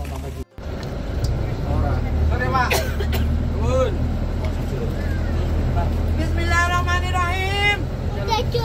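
Steady low engine and road rumble of a coach bus heard from inside the passenger cabin, with passengers' voices over it. The sound cuts out briefly about half a second in.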